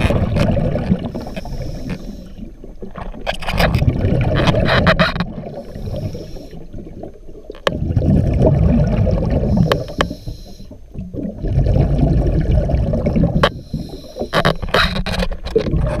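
Scuba diver breathing through a regulator underwater: exhaled bubbles rumble and gurgle out in about four bursts of a second or two each, with quieter hiss and a few sharp clicks between them.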